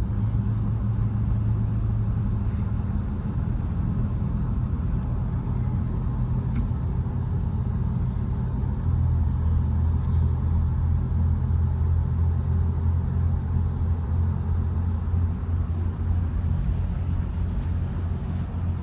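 Pickup truck cab noise while driving with a travel trailer in tow: a steady low engine and road rumble whose pitch shifts down and gets stronger about nine seconds in.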